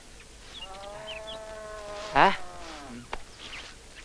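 A flying insect buzzing steadily for about a second and a half, dropping slightly in pitch as it fades. A man's short "He?" follows, then a single click.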